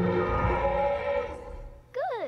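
Soundtrack of an animated film playing: a sustained, layered tone over a low hum, fading away about a second and a half in.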